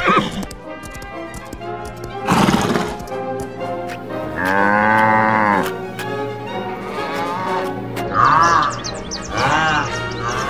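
Animal calls over background music: a horse neighing, then a long drawn-out call about halfway through and two shorter calls near the end, from cattle.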